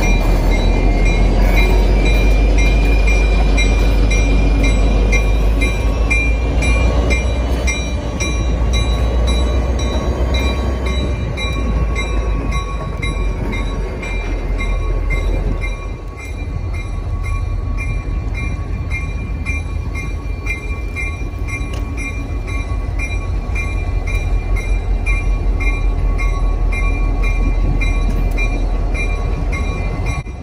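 Diesel locomotive running slowly at close range, a deep steady engine rumble, with an evenly repeating high ping over it. Its loudness dips briefly about halfway, then the rumble picks up again.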